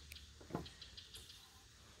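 Near silence: faint background hum, with one soft short sound about half a second in.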